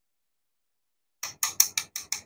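A quick run of about six short, raspy clicks, starting about a second in, as a toy watermelon and a wooden toy knife are handled over a wooden cutting board.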